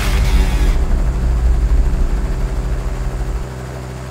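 Air ambulance helicopter lifting off: a loud, steady low rumble of rotor and engine that drops away near the end.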